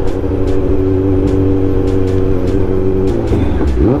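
Kawasaki Z900's inline-four engine heard from the rider's seat, running at a steady pitch while cruising. About three seconds in it drops to a lower note as the throttle is rolled off and the bike slows.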